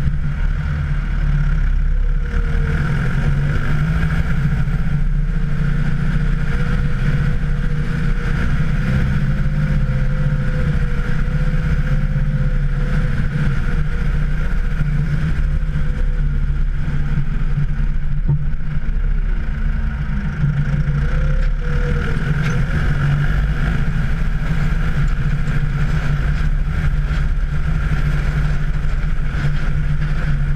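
Valtra N101 tractor's diesel engine running steadily under load while it pushes a snow plough. A thin whine sits over the engine for much of the first half and comes back briefly later.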